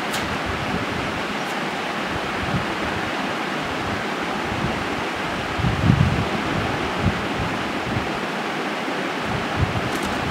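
Steady rushing noise with no tone in it, with a few short low bumps about six seconds in and again near the end.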